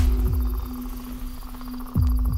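Deep trailer impact boom at the start, its low rumble sliding down in pitch and fading over about a second, with a second boom right at the end. Under it runs a steady low drone note and high, regular cricket chirping of a night-time woods ambience.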